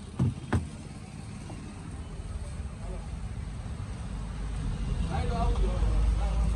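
Pneumatic staple gun firing twice into a motorcycle seat cover, two sharp clicks in quick succession at the start. After that a low rumble builds up and is loudest near the end.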